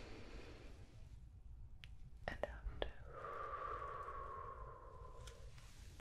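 Soft, close-up whispered breathing: a breath in at the start, a few small mouth clicks about two seconds in, then a long slow breath out through the lips with a faint tone that sinks a little in pitch.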